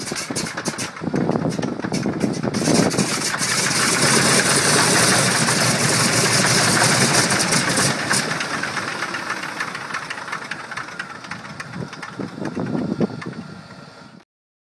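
C-47's Pratt & Whitney R-1830 Twin Wasp radial engine being started: it fires irregularly with sharp pops, catches and runs for a few seconds, then fades as it winds down and dies. With its fuel lines empty after months of sitting, the engine does not keep running on this attempt.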